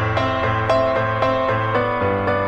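Background music led by piano, with new notes struck a few times a second.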